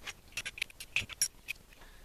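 A quick run of light clicks and clinks, about eight or nine in a second, with one duller knock among them: small hard objects being handled.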